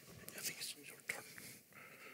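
Faint, off-microphone whispered talk with a few light clicks and rustles.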